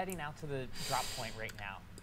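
A man's voice talking quietly, from a relayed live-stream broadcast turned down low.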